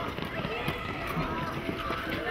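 A group of children running on a dirt playground: footsteps on the ground amid the overlapping chatter and shouts of many children's voices.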